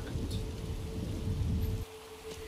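Steady rain with a low rumble in a TV drama's soundtrack, with a faint steady tone underneath; the rain and rumble cut off abruptly near the end at a scene change.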